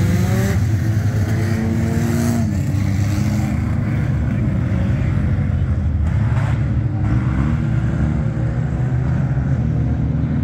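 A pack of front-wheel-drive four-cylinder dirt track race cars running together, several engines revving up and down over one another with overlapping rising and falling pitches.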